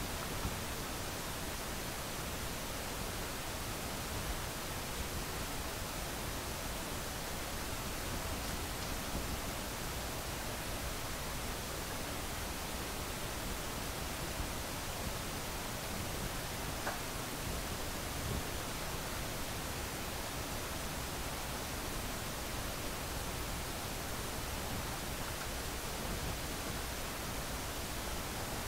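Steady, even hiss of background noise, with a faint tap or two.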